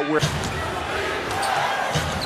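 Crowd noise in a basketball arena, with a ball bouncing on the court.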